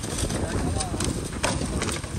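Celery stalks being cut by hand with a harvesting knife: several crisp snaps at irregular intervals over a steady low rumble.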